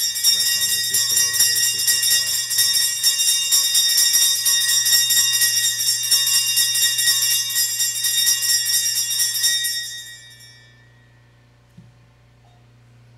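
Altar bells shaken continuously in a rapid, bright jingle, marking the elevation of the chalice at the consecration; the ringing stops about ten seconds in and rings away over the next second.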